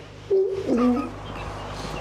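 Short burst of laughter about half a second in, then quieter.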